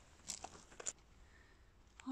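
Near silence: faint outdoor background hiss with a few soft clicks in the first second.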